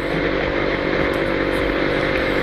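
Suzuki Tornado's single-cylinder two-stroke engine running at a steady speed while riding, over a steady rush of wind and road noise.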